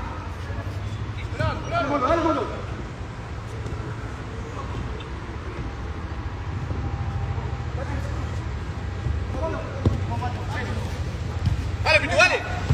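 A football being kicked with a sharp thud on an artificial-turf pitch, amid scattered shouts from players and onlookers over a steady low hum.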